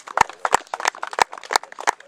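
A few people clapping at a steady pace, about three loud claps a second with fainter ones between.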